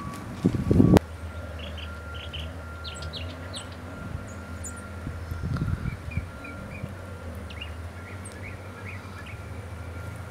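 Wild songbirds giving short, high chirps and calls, scattered throughout, over a steady low hum. For about the first second, wind buffets the microphone; this cuts off abruptly.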